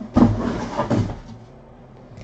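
Sealed cardboard trading-card boxes being handled and shifted on a table: a sharp knock just after the start, then about a second of scraping and handling noise.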